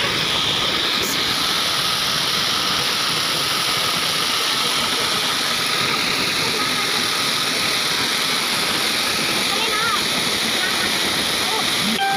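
Waterfall pouring close by onto rock and into a pool: a loud, steady rush of falling water.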